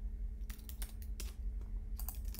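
Typing on a computer keyboard: a short run of quick, crisp key clicks in the middle.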